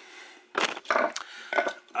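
A few brief scraping and knocking handling noises, about half a second apart, in a small room.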